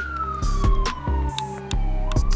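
Fire engine siren wailing: one slow wail falling in pitch, starting to rise again at the end, heard over background music with a heavy, regular beat.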